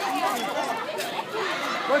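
Crowd chatter: many students' voices talking and calling out over one another, with no one voice standing out.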